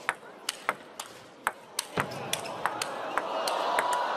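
Table tennis rally: the plastic ball clicks sharply off the bats and the table, about three hits a second. The crowd noise swells steadily through the second half as the rally goes on.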